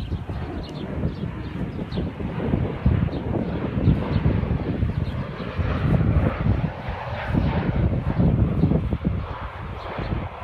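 Crop-dusting airplane's engine droning as it flies low over the field, louder in the second half, with wind rumbling on the microphone.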